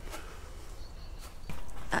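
Quiet outdoor background, then, about one and a half seconds in, the steady swish of a long-handled wash brush scrubbing soapy water over a motorhome's side wall.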